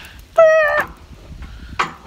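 A short, high-pitched vocal cry about half a second in, lasting under half a second and wavering slightly in pitch.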